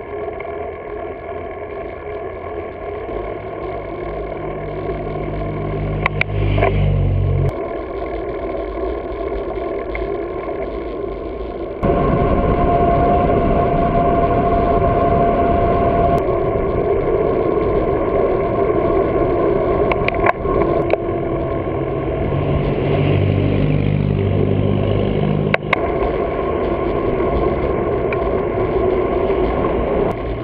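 Road noise picked up by a bicycle-mounted action camera: steady wind and tyre rush with traffic, including the hum of passing cars' engines twice, with sudden jumps in the sound where clips are cut together.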